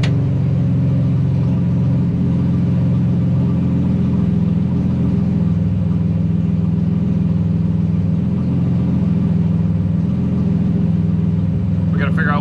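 Race car engine idling steadily, heard from inside the stripped, roll-caged cabin.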